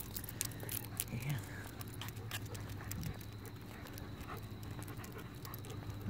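Quiet sounds of a dog being walked on a leash over asphalt: scattered light clicks and steps, such as claws, a chain collar and footfalls, over a low steady hum.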